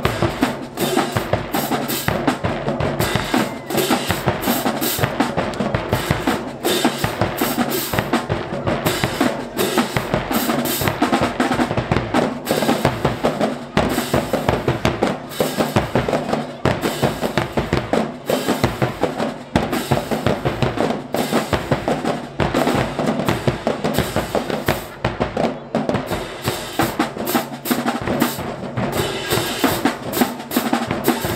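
Marching band drumline playing a fast, steady cadence: snare drums, bass drums and crash cymbals.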